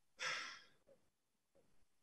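A single short, airy breath from a person, near the start of a pause in talk.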